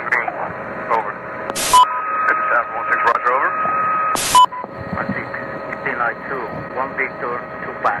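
Military radio chatter: voices through a narrow, crackly two-way radio channel. Two short bursts of static, each with a brief beep, break in about two seconds in and again just past four seconds, with a steady tone held between them.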